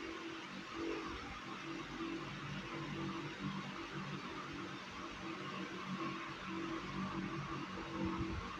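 Steady hiss of room noise, with faint low tones that come and go.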